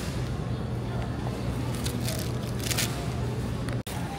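Steady low hum of a supermarket's background noise, with a few brief crinkles of a plastic produce bag being handled about two to three seconds in.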